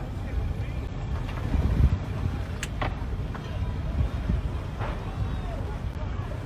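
Low, steady rumble of idling outboard boat engines, with a couple of sharp pops about two and a half seconds in.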